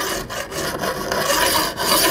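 Hand file rasping in repeated strokes along the rail edge of a steel Stihl Rollomatic ES chainsaw guide bar, held at about 45 degrees to deburr the edge and put a slight chamfer on it after the rails have been filed.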